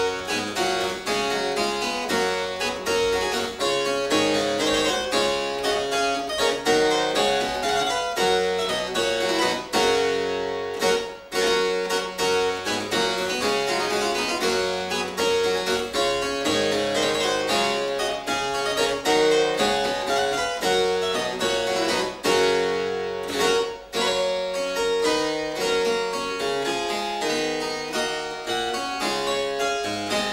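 Solo harpsichord playing a continuous stream of plucked notes, with brief breaks between phrases about 11 and 24 seconds in.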